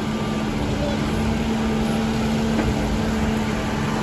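Backhoe loader's diesel engine running steadily under hydraulic load as its boom lifts, a constant low rumble with a steady hum.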